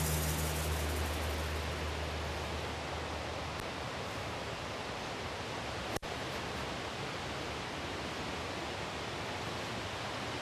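Fast stream rushing over rocks: a steady wash of white-water noise, broken by a momentary dropout about six seconds in.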